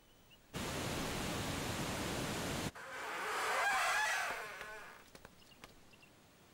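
A steady rushing noise that starts suddenly and cuts off abruptly after about two seconds, followed by a second rushing sound that swells and fades away.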